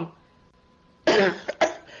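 A man coughs about a second in: one rough cough followed by a short second burst, after a second of near silence.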